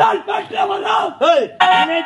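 A performer's loud, strained shouting cries in Tamil stage drama. Near the end the voice settles into a long held note.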